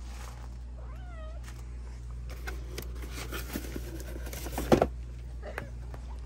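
A domestic cat gives one short, wavering meow about a second in. Then come scattered rustling and clicking sounds, with one loud knock near the end.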